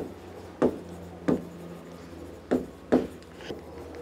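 Stylus writing on the surface of an interactive display board: about five short, separate taps and scrapes at an uneven pace as the letters are written.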